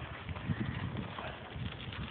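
A bicycle rolling over a gravel road: a steady crunch and rattle with irregular low thumps.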